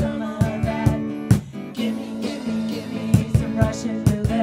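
Live music from a strummed acoustic guitar and a drum kit keeping a steady beat, with a brief break in the drumming about a second and a half in.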